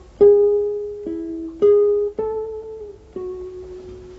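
Nylon-string classical guitar playing a short melodic phrase of about five single plucked notes, each left to ring, the last fading out near the end. It is the same phrase played again in a different tone colour, to show the guitar's range of timbres.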